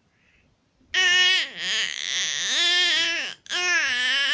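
A baby vocalizing in high-pitched, happy squeals: one long call gliding up and down in pitch, starting about a second in, then a short break and a second call near the end.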